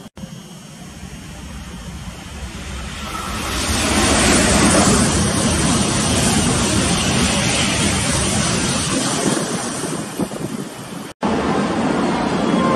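Shinkansen high-speed train running past the platform, a rushing roar that builds over a couple of seconds, holds loud for about six seconds and then eases off. The sound cuts off abruptly about a second before the end.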